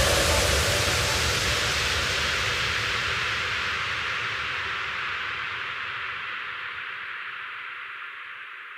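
Synthesized white-noise wash at the end of a hardstyle track, fading out steadily with its high end falling away, as if a filter were closing.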